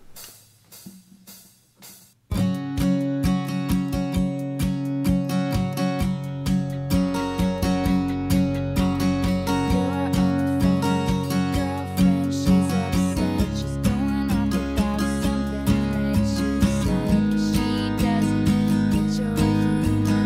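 Brunswick AGF200 acoustic guitar with a capo at the fourth fret, strummed in a steady rhythm through a chord progression. It starts about two seconds in, after a brief quiet moment.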